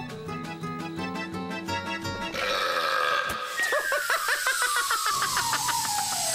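Cartoon background music with short plucked notes for about two seconds, then a hiss of escaping air. About three and a half seconds in, a sputtering balloon-deflating sound effect begins and slides steadily down in pitch: an inflated balloon letting its air out and zooming off.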